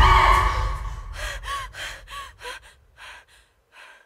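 A young woman's frightened gasping: a loud gasp at the start that trails off, then a run of short, quick breaths, about three a second, growing fainter and dying away near the end.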